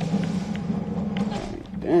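A steady low hum with a few faint clicks, then a man's voice exclaiming loudly near the end.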